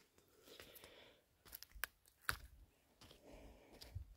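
Faint footsteps on dry rocks and burnt debris, with a few sharp clicks and crunches, and soft panting breaths from a person climbing a steep slope.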